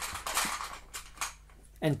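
Light plastic clicks and rustle of LEGO Technic parts being handled and fitted together by hand, a few small clicks in the first second.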